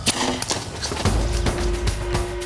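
A tranquilliser dart rifle fires once with a sharp crack right at the start, then heavy thudding footfalls of rhinos running off, from about a second in.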